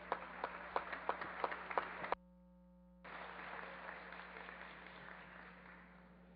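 Scattered clapping in a large hall, with separate claps standing out over a softer spread of applause, cut off abruptly about two seconds in. A brief steady electronic hum follows, then a soft, even hall noise that slowly fades.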